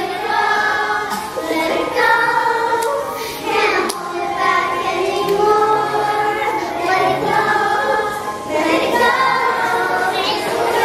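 Two young girls singing a pop song together into microphones over instrumental accompaniment.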